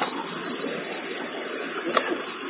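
Steady rushing water noise with a constant high-pitched hiss above it, even throughout with no distinct knocks or splashes.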